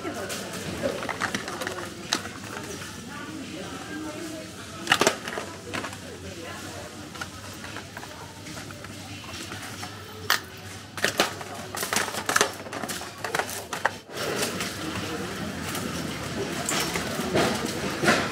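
Pringles cans being dropped into a wire shopping cart, several sharp clacks, one about five seconds in and a run of them from about ten to fourteen seconds, over indistinct background talk from the supermarket.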